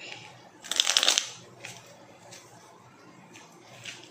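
A deck of message cards riffled in one quick flurry about a second in, followed by a few light clicks and taps as a card is drawn and laid down on the table.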